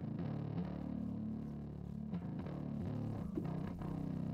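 Electric bass guitar track played on its own, a line of low picked notes that change pitch every half second or so.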